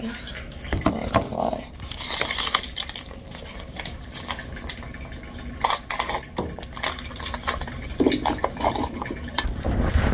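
Pouches of cat food being handled, opened and emptied into a small dish: plastic crinkling with scattered clicks and clinks of the dish.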